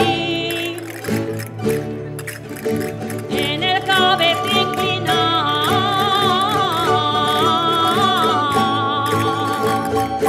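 A rondalla, a Valencian folk string band, playing a valencianes dance tune. Plucked strings keep a steady beat, and a high wavering melody line enters about three seconds in and carries on to near the end.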